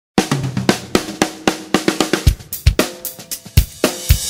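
Drum-kit intro of a recorded song: snare, kick drum and cymbal hits in a steady beat of about four strikes a second.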